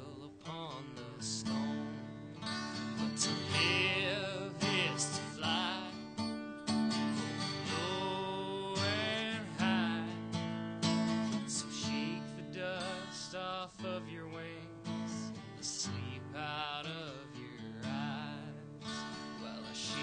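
Acoustic guitar strummed and picked as the accompaniment to a folk-style song, with a wavering melody line rising over the chords several times.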